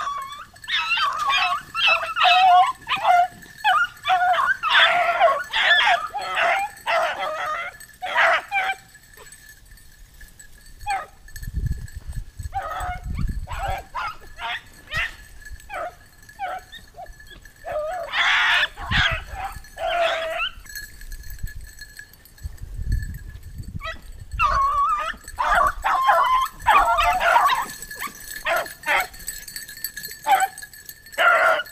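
A pack of beagles baying and yelping on a rabbit's trail, in three spells of dense calling, at the start, around the middle and near the end, with scattered single barks between.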